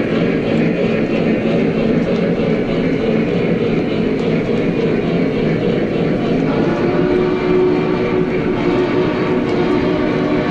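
O gauge Lionel train cars rolling past on the track: a steady rumble of wheels on the rails. A steady hum joins in about six and a half seconds in.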